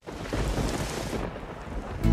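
Thunderstorm sound effect: a deep rumble of thunder over the hiss of falling rain, starting suddenly, the rain's hiss thinning about a second in.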